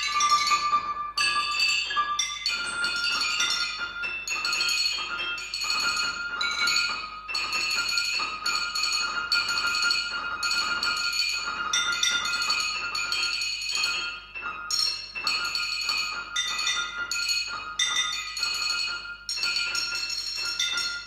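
Contemporary music for piano and percussion: a dense stream of high, bright, glassy and bell-like struck notes that ring into each other in short clusters with brief gaps, over a held high tone.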